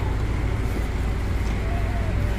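Steady low rumble of motor traffic and engines.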